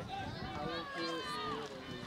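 Several people shouting and calling out at a soccer match, their voices overlapping.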